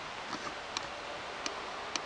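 About five sharp, short clicks at irregular spacing over a steady background hiss, the loudest near the end.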